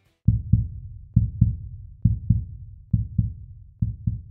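Outro music made of deep drum thumps struck in pairs, about a pair a second, in a heartbeat-like rhythm.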